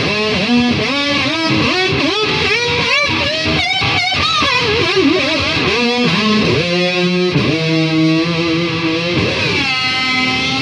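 Amplified Dean ML-style electric guitar with a Floyd Rose tremolo playing slow, blues-type single-note lead lines, with bent notes, wide vibrato and a few notes held for about a second. Near the end one note glides down and back up before another is held.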